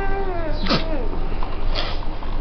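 Young infant fussing: a short wail that falls slightly in pitch, followed by a brief sharp cry that slides steeply down.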